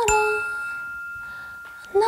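A single bright ding, something struck that rings on at one steady pitch and slowly fades, as part of a live song. A lower held note dies away in the first half second, and a new note starts just before the end.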